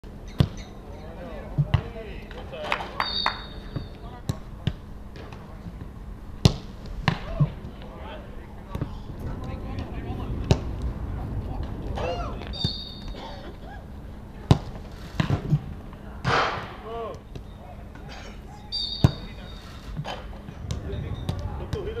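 Footballs struck hard in shooting practice: sharp kicks and ball impacts every second or few, some in quick pairs, with players' shouts between, one loud shout about three quarters of the way through.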